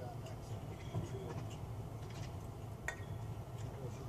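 Faint, indistinct voices over a steady low outdoor rumble, with one sharp metallic click about three seconds in.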